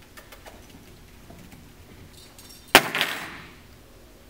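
A sudden loud clatter about three-quarters of the way in, two quick strikes that ring out and fade within about a second. It is a noise distraction in a puppy aptitude evaluation, testing the puppy's sensitivity to a sudden sound.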